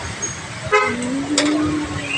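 A vehicle horn gives a brief toot about three quarters of a second in, followed by a steady low tone held for about a second, over street traffic noise.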